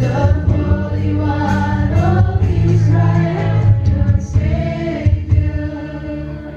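A church worship song: a lead singer on microphone and a group of voices singing together over a live band.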